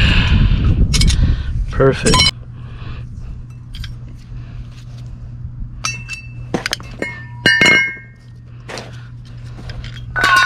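Metal hand tools clinking: a few sharp clinks with short ringing about six to eight seconds in, after a couple of seconds of rough handling noise, over a low steady hum.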